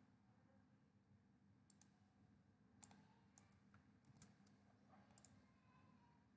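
Near silence broken by several faint computer mouse clicks, some in quick pairs.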